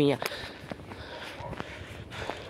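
Footsteps on a thin layer of snow: a few soft, irregular steps.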